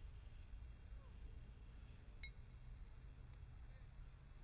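Near silence: a faint low rumble of outdoor background, with one brief faint high beep about two seconds in.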